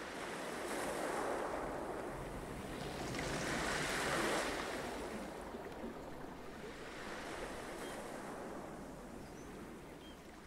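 Ocean surf: waves washing in, swelling louder about a second in and again, loudest, about four seconds in, then slowly easing off.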